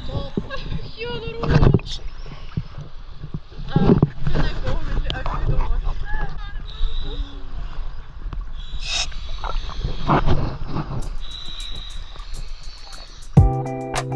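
Sea water sloshing and splashing around a camera held at the surface, over a low rumble, with muffled voices now and then. Near the end, guitar music starts.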